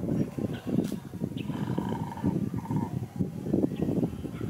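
A dog growling in a low, rough rumble, with a thin higher tone in the middle of it.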